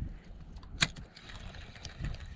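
Spinning reel being wound in during a lure retrieve, over low wind rumble on the microphone, with one sharp click a little before halfway and a few faint ticks.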